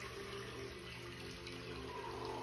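Steady, faint background noise, a hiss like running water over a low hum, with no distinct sound standing out.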